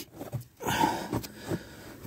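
Shoes and clothing scuffing and rustling on rock as a person clambers into a narrow rock passage, with a few soft knocks.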